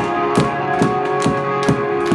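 Live band playing: guitars holding a sustained chord over a drum kit beating evenly, about two strokes a second.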